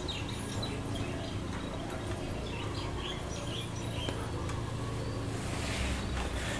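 Faint bird chirps, short and high, over a steady low hum.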